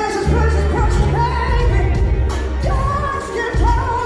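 Live band with a woman singing lead: held sung notes that slide up into pitch, over bass and drums, recorded from the audience in a large hall.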